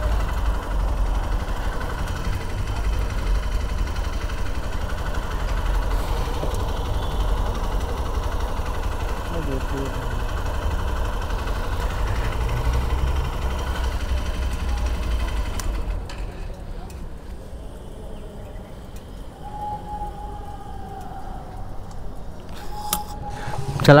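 Petrol pump dispensing fuel through the nozzle into a motorcycle's tank: a steady low hum with a rushing hiss that cuts off suddenly about two-thirds of the way through. After it, a quieter background with a faint high tone.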